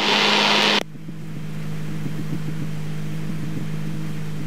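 Extra 300L's engine running steadily at reduced power in the cockpit as the plane slows toward a stall, a low even hum. For the first moment a loud rush of air noise covers it, then cuts off suddenly under a second in.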